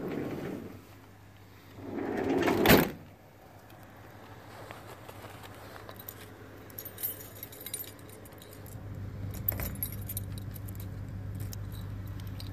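A door pushed shut, a rising shuffle ending in a sharp slam about two and a half seconds in. Then a bunch of keys jangling and clicking in short bursts.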